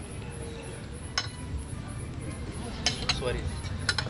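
A few light clinks of cutlery against plates, scattered across the few seconds, over a steady low background rumble.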